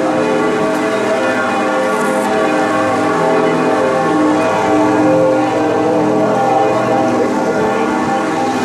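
Cologne Cathedral's bells pealing together, many overlapping bell tones ringing on steadily.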